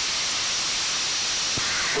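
Steady hissing rush of cockpit noise in a small aircraft in flight, the engine and airflow heard from inside the cabin, with a faint click near the end.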